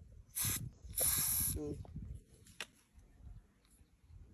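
Aerosol sunscreen spray hissing in two bursts against bare skin: a short puff, then a longer spray of almost a second.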